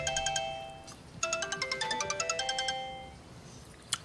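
Mobile phone ringing with a melodic ringtone: a quick run of short electronic notes that dies away about a second in, then repeats from just after one second and fades out near three seconds. A brief click comes just before the end, as the call is answered.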